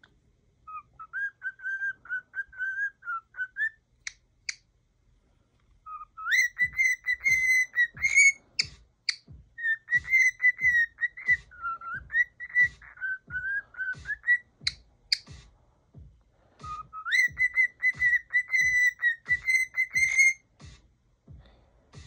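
Male cockatiel singing: chirpy whistled phrases broken into rapid stuttering notes, each phrase sliding up in pitch at its start. There are three phrases with short pauses between them, and two sharp clicks in the pauses.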